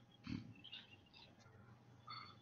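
Near silence: faint room tone on a video-call microphone, with one brief, faint low sound about a third of a second in.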